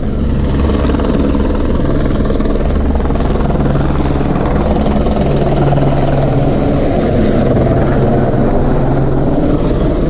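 Police helicopter hovering low overhead, its rotor and turbine giving a loud, steady drone.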